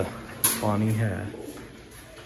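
A sharp plastic click from a cage feeder bowl being handled, followed by a low, steady coo from a pigeon lasting under a second.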